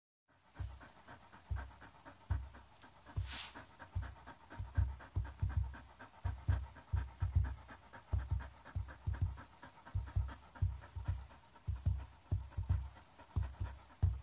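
Hands patting a fluffy Samoyed's body in a rhythm, giving a string of dull, muffled thumps, while the dog pants quickly throughout. A short hiss comes about three seconds in.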